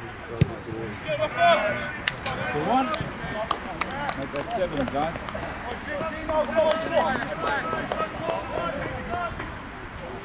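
Rugby players and spectators shouting short calls across the pitch, overlapping and mostly unintelligible. A single sharp thump sounds about half a second in.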